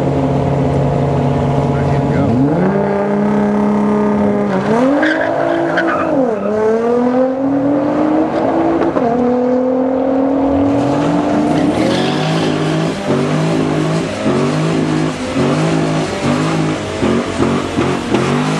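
A 2014 Corvette Stingray's V8 and a 2009 Nissan GT-R's twin-turbo V6 idling at the start line, then launching hard about two seconds in. The engine note climbs and drops at each of about three upshifts as the cars accelerate away. In the latter part, an engine is revved up and down over and over in quick, regular blips.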